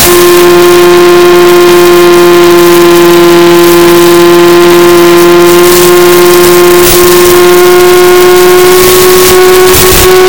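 Electric motor and propeller of a Mini Skywalker RC plane whining steadily in cruise, heard through the onboard FPV camera's microphone; the pitch holds nearly level and creeps up slightly toward the end. A short burst of hiss comes near the end.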